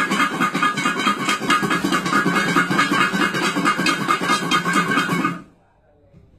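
Garlic cloves rattling hard inside two bowls being shaken together to loosen the skins: a fast, loud, continuous rattle that stops abruptly about five seconds in.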